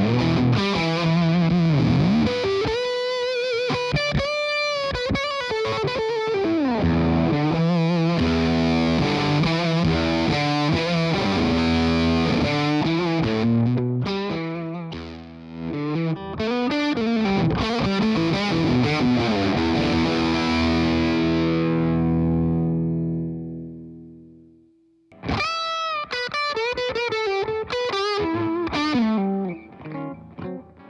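Electric guitar through a Wampler Velvet Fuzz pedal, played with a fuzz tone: lead lines with string bends and sustained chords. A long held chord fades away about 23 seconds in, and playing starts again a second or two later.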